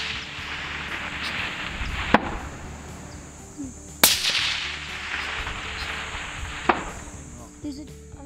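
A suppressed centre-fire rifle fires once about four seconds in, and its report rolls away slowly as it echoes off the surrounding hills. A fainter, sharper crack arrives about two and a half seconds after the shot, and a similar crack comes about two seconds in, following an earlier shot.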